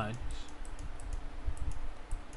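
Light, irregular clicking of a computer keyboard and mouse over a low steady hum.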